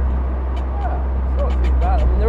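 Supercharged 2.0-litre Honda K20 four-cylinder of an Ariel Atom cruising at steady revs, a constant low drone heard from the open cockpit.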